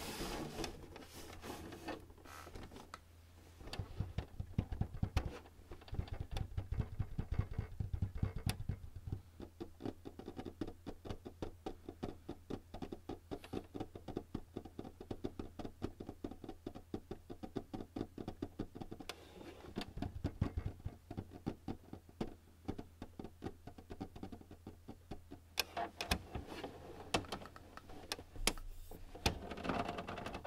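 Fingertips tapping on the plastic scanner lid and top of a Canon all-in-one printer: a long, quick run of light taps, several a second, with heavier handling knocks and rubs in places.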